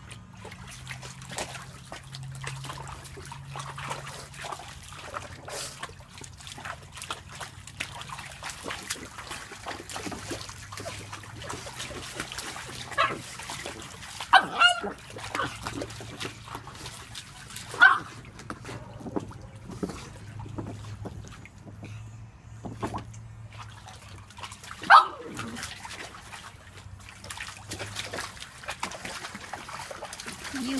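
A pug splashing through shallow water in a paddling pool while making noise at a shark toy. A few short, sharp sounds stand out, the loudest about 25 seconds in.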